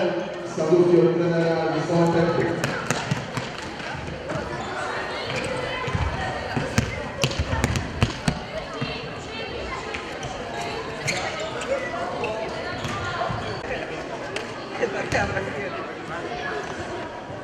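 Futsal ball being kicked and bouncing on a hard sports-hall floor: a run of sharp thuds that echo in the hall, thickest in the middle, over players' shouts and chatter. A voice is held over the first couple of seconds.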